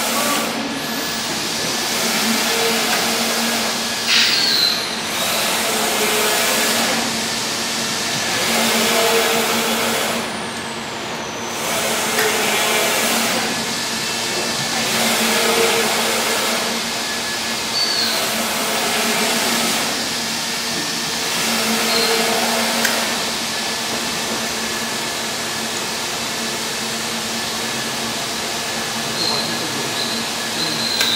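Scorpion 5100 wide-format inkjet printer with Konica 1024 print heads running as it prints: a steady mechanical hum that swells and fades about every two to two and a half seconds as the print-head carriage sweeps back and forth across the media.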